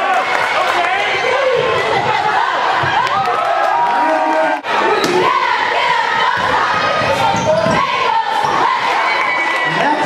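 Basketball game audio in a gym: a crowd shouting and cheering, with many voices overlapping, and a basketball bouncing on the hardwood court. The sound drops out briefly about halfway through, then goes on.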